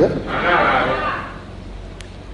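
A man's voice ends a phrase with a falling pitch, then makes a short breathy, unpitched vocal sound that fades over about a second, followed by a brief pause over a steady low recording hum.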